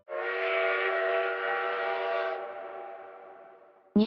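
Train whistle sound effect: one long blast of several tones sounding together, starting suddenly, held for about two seconds and then fading away.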